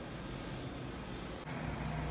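Hands rubbing and handling printed cotton fabric, a soft rustling. A low steady hum sets in about one and a half seconds in.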